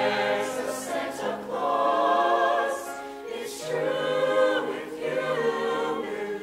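Mixed-voice show choir singing in harmony, sustained notes with vibrato in phrases that break about every one and a half to two seconds, with crisp sibilant consonants at the phrase breaks.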